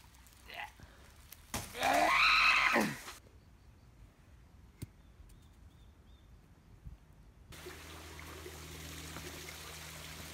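A man's drawn-out wordless strain, about a second and a half long, as he heaves up a large dead branch. After a quiet stretch with a single click, a steady hiss with a low hum sets in about three quarters of the way through.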